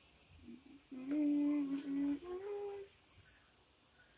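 A person humming: a long steady note about a second in, followed by a shorter, higher note.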